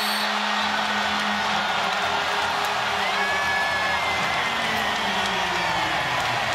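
Basketball arena crowd cheering steadily after a made three-pointer, with music playing underneath as long held tones.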